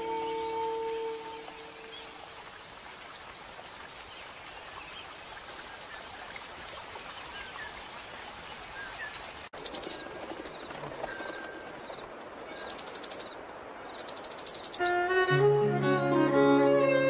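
Between two pieces of Celtic music, a held note fades out into a soft, even hiss of nature-sound ambience. After a sudden cut, three short runs of rapid high-pitched chirps sound, and plucked strings and fiddle begin near the end.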